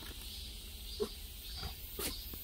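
A short animal grunt about a second in, with a fainter one near the end, over steady chirping from insects such as crickets.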